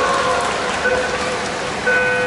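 Track cycling start countdown: a short electronic beep about a second in, then the long beep that signals the start of the team pursuit, sounding over a steady hubbub in the velodrome.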